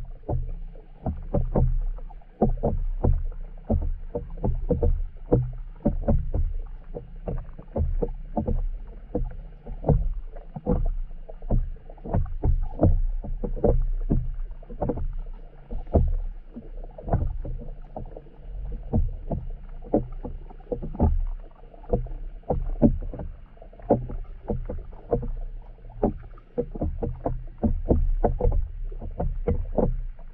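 Muffled underwater sound picked up through a sealed camera housing: a steady low rumble with many rapid, irregular knocks and taps, dull and cut off in the highs.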